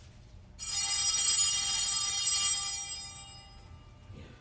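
Altar bells rung at the elevation during the Eucharistic prayer: one bright, many-toned chime that starts about half a second in and fades away over about three seconds.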